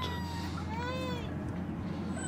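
Anatolian Shepherd puppy whining: one short, high cry about a second in that rises and falls in pitch, after a faint thin whine at the start.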